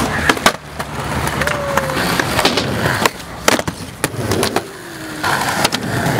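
Skateboard wheels rolling on concrete, broken by a series of sharp wooden clacks as the deck pops, flips and lands, with quieter gaps between the runs.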